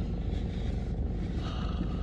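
Car engine idling steadily, a low even rumble heard from inside the cabin.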